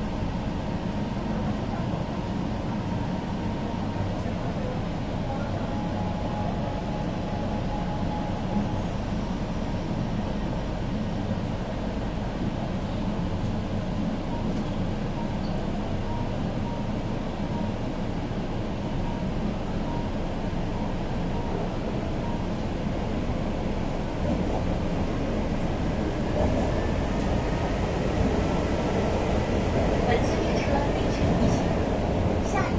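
Steady rumble of a Shanghai Metro subway train running, heard from inside the passenger car, growing a little louder over the last few seconds.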